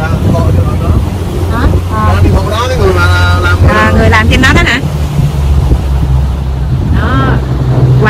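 A boat's motor running steadily under way, a low hum that shifts slightly in pitch about halfway through, with wind buffeting the microphone.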